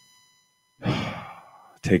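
A man's sigh into a close microphone: one breathy exhale about a second in that starts sharply and fades away over most of a second.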